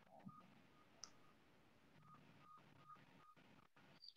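Near silence over a video call, with a few faint, short high beeps from a hospital bedside patient monitor, the monitor's signal that the patient's heart rate is rising.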